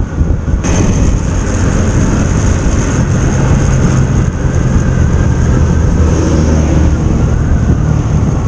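A motorcycle being ridden along a road: steady wind rush on the microphone over the engine's low drone. The noise steps up suddenly about half a second in.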